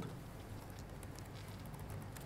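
Faint room tone with a low steady hum and a few light laptop keyboard taps.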